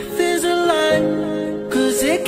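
Recorded pop song playing: a melody with short sliding notes over held chords.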